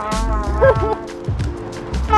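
Trumpet played solo: a wavering phrase with quick bends in pitch in the first second, then softer, steadier lower notes.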